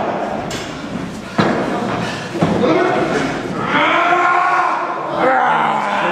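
Two sharp thuds in a wrestling ring, about a second apart, followed by long drawn-out voices from the hall in the second half.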